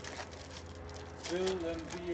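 Trading cards and pack wrappers being handled on a table, a few faint soft ticks and rustles over a low steady hum, with a short murmured voice near the end.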